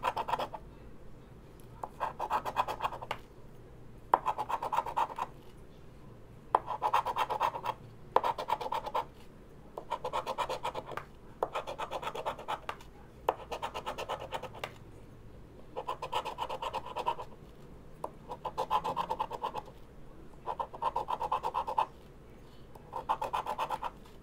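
The edge of a fidget spinner scraping the latex coating off a paper lottery scratch-off ticket. It comes in about a dozen bursts of rapid back-and-forth strokes, each about a second long, with short pauses between them as each number spot is uncovered.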